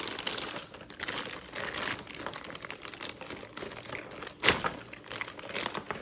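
Thin plastic bag of plastic Easter eggs crinkling and rustling as it is pulled and torn open by hand, with many small clicks of plastic. There is one sharp snap about four and a half seconds in, the loudest sound.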